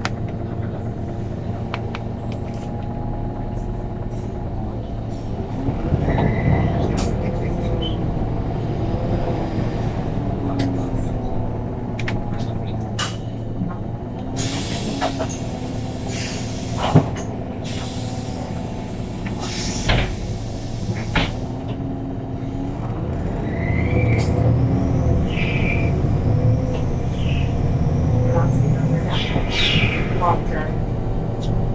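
Interior of a MAN natural-gas city bus on the move: the engine drones steadily and rises in pitch as the bus speeds up, about six seconds in and again near the end. Short bursts of air hissing come around the middle, with a sharp click in between.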